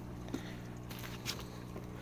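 Steady low electric hum from the hydroponic system's running pumps, with a few faint light taps.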